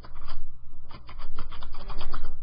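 Rapid typing on a computer keyboard close to the microphone: a quick, irregular run of key clicks over a steady low hum.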